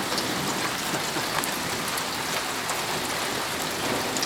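Steady rain falling on pavement and lawns, an even hiss with no thunder standing out.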